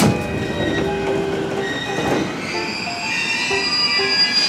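Electric commuter train running on the rails, with high squealing tones from the wheels over a steady rumble. The sound starts abruptly, and the high tones grow stronger near the end.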